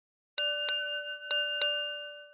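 A bell struck four times in two quick pairs, each strike ringing out clearly and fading, the last dying away just after the others.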